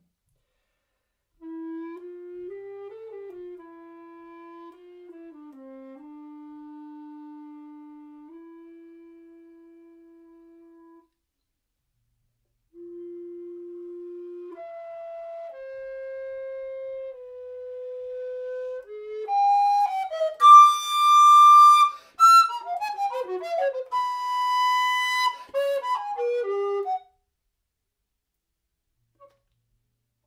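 Tenor recorder (Mollenhauer Helder Tenor) playing soft, low held notes that fade away to nothing, shaded off with the thumb. After a short pause come quiet notes played with lip control, rising in pitch. About two-thirds of the way in, a loud, fast flurry of bright notes breaks out and stops abruptly near the end.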